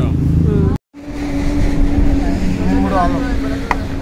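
A steady low machine hum with a higher steady tone over it, cut off for a moment about a second in. Faint voices chatter in the middle, and a single sharp clink comes near the end.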